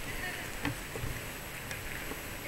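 Steady outdoor background noise with a few soft thumps and clicks, about a second apart, from a camera carried along on foot.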